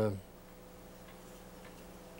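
A man's drawn-out 'uh' trails off, then a pause of low room tone with a steady electrical hum.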